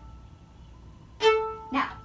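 Violin's open A string bowed with short, accented martelé strokes. The last note rings off, then a new note starts sharply about a second in and is stopped short.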